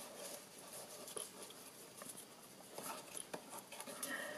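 Faint rustling of a satin ribbon and a cardstock box being handled by hand, with a few light ticks.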